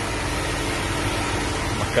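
A 2005 GMC Sierra's 4.8-litre Vortec V8 idling steadily with an even hum.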